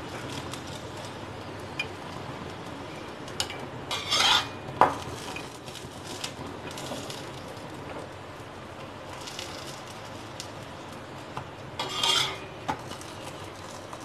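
Metal spatula scraping and pressing a kulcha on a hot iron tawa, over a steady sizzle. Two louder scrapes stand out, about four seconds in and about twelve seconds in.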